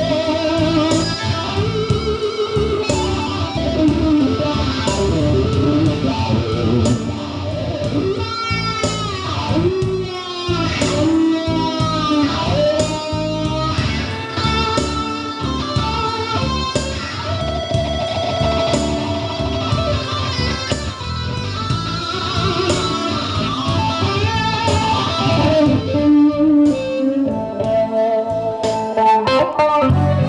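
Live electric guitar playing, from a worn Stratocaster-style guitar through an amplifier, over a steady beat, with bending, wavering notes through the middle.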